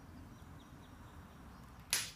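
Quiet outdoor ambience with a low steady rumble, then near the end a single sharp click.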